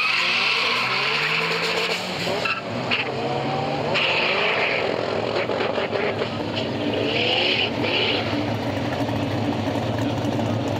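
Drag-racing cars launching and accelerating hard, engines rising in pitch as they pull away, with repeated bursts of tire squeal.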